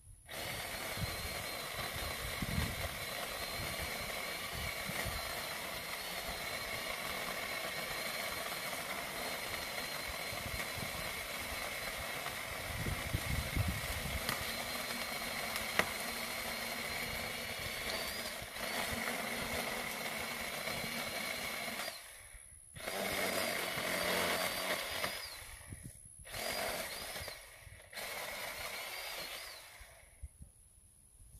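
Black+Decker 10-inch electric chainsaw cutting a fallen tree trunk: a steady motor whine for about twenty-two seconds, then three shorter bursts with silent pauses between them.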